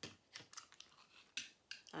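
A few faint, sharp clicks and scrapes of a small cutting blade working at the plastic wrapping of a plastic candy jar.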